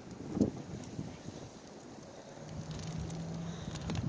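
Quiet outdoor ambience with light wind rumbling on the microphone, a brief low sound about half a second in, and a faint steady hum in the second half.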